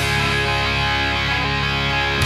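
Hard rock band playing an instrumental passage without singing: distorted electric guitars and bass holding sustained chords.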